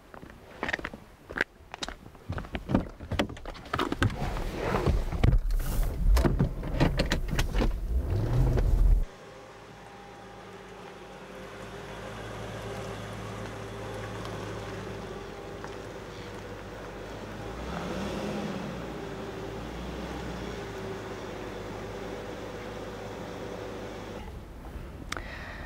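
A car with loud irregular knocks and clatter over its engine, the engine note rising as it pulls away. It is cut off suddenly about nine seconds in by a steadier, quieter vehicle hum with a few held low tones.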